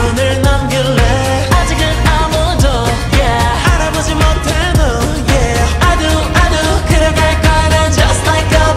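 Slowed-down, reverb-heavy edit of a K-pop song: a woman singing over a steady beat with deep bass.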